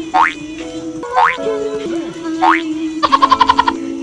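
Background music with three quick rising whistle-like glides about a second apart, cartoon-style sound effects, then a rapid run of about a dozen short notes near the end.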